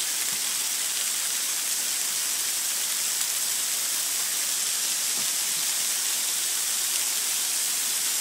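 Heavy freezing rain mixed with pea-sized hail falling steadily, a dense even hiss with no breaks.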